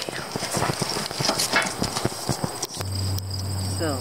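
A run of irregular light knocks and clicks as string and other items are handled in the tray of a metal wheelbarrow. About three-quarters of the way through, this gives way to a steady chirring of insects over a low steady hum.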